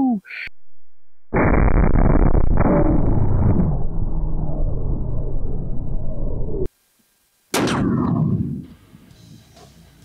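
Blasts from a .50 BMG rifle firing a black-tip armor-piercing round into steel plate. A long, deep boom starts about a second in and cuts off suddenly; a second sharp blast follows about a second later and fades quickly. Brief laughter near the end.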